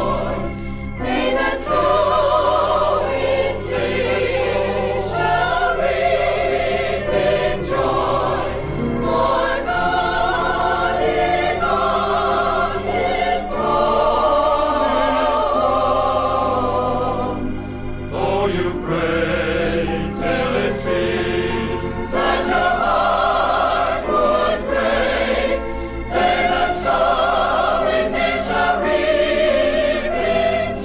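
A 40-voice choir singing a gospel song with full vibrato over sustained low accompaniment. The phrases break briefly a little over halfway through.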